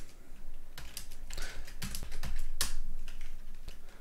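Typing on a computer keyboard: an uneven run of key clicks.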